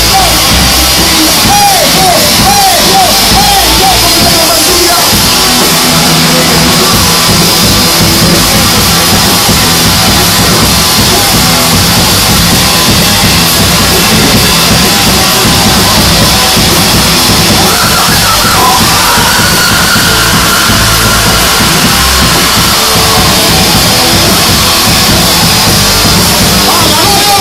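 Live band playing loud, with drum kit and electric guitar, steady and dense throughout.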